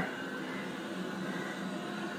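Ultenic D5s Pro robot vacuum running on carpet: a steady motor and brush hum.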